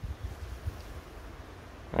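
Wind buffeting the microphone: an uneven low rumble with faint hiss above it.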